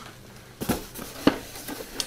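Cardboard box being handled and opened: a few light knocks and some rustling and scraping, the sharpest knock a little past a second in.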